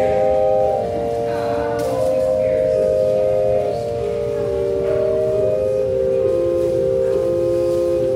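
Pipe organ playing slowly, several sustained notes held together and changing step by step every second or so.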